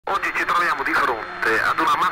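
A sampled spoken voice opening a speedcore record, thin-sounding with little bass, talking without music behind it.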